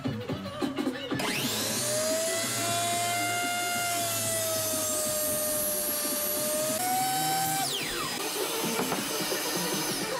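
Metabo HPT compound miter saw motor starting about a second in with a rising whine, then running steadily, slightly lower in pitch while the blade cuts through a wooden post. The pitch steps up as the cut finishes, and the motor is switched off and winds down with a falling whine.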